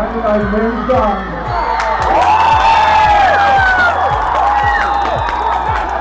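Football crowd cheering and whooping at a goal, swelling about two seconds in, over background music with a steady beat.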